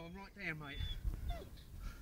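A man's voice, faint, saying a couple of drawn-out syllables in the first second, then near quiet with only small faint sounds.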